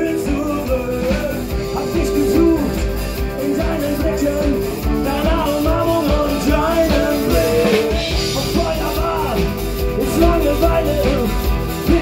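Live band music with accordion, drums and singing, playing continuously.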